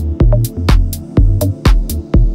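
Minimal house (microhouse) electronic music: a steady kick drum about twice a second, with crisp clicking percussion between the beats over a deep held synth bass.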